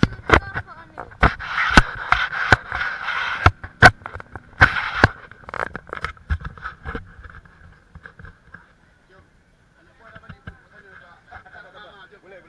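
Handling noise on a body-worn camera: a run of loud, sharp knocks and scraping rustles against the microphone for the first seven seconds, then fewer and quieter ticks, with faint voices in the background.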